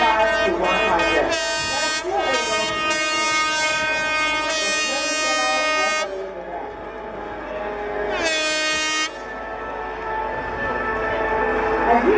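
Handheld air horn sounding a run of steady, single-pitched blasts over the first six seconds, the last of them the longest, then one more short blast a couple of seconds later, over background music.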